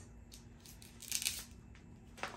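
Scissors cutting open plastic packaging: faint snips and rustling, with the loudest rasp about a second in.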